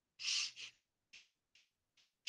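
A man's short, audible breath in about a quarter second in, with a faint catch of voice, followed by a smaller breath and then a few faint ones.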